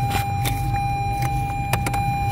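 A few light clicks of plastic HVAC damper levers being handled and seated, two close together near the end, over a steady low hum and a thin steady whine.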